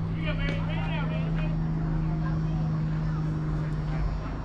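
A steady, low engine hum, with voices calling out across the field in the first second and a half.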